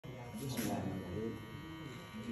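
Electric hair clipper running with a steady buzz, with low voices over it in the first second or so.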